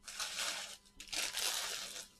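Cellophane wrapping crinkling as it is handled and crumpled, in two bursts of about a second each.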